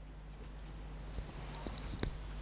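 A pause in a man's speech: faint, steady low room hum picked up by a lapel microphone, with a few soft clicks about halfway through and near the end.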